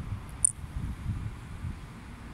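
Low, gusty buffeting of wind on the microphone over faint street noise, with one brief high-pitched squeak about half a second in.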